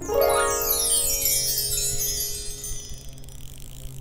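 Bell-like chime sound effect: a shimmering cascade of tones sweeping up and down, starting suddenly and fading out over about three seconds.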